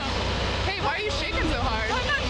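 People talking indistinctly over a steady low hum.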